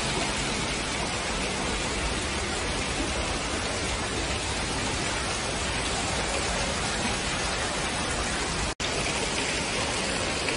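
Artificial waterfall splashing into a rock pool, a steady rushing hiss of falling water that briefly cuts out near the end.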